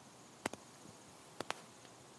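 Faint, steady high chirping of insects, broken by two quick double clicks, one about half a second in and one about a second later.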